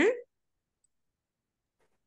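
A woman's voice finishing a spoken word, then near silence.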